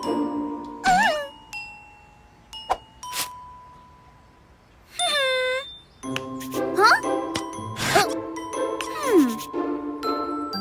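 Cartoon background music with chime-like bell notes and gliding comic sound effects. The music thins out partway through, and a short, wordless character vocalization comes about five seconds in, before the music returns fuller.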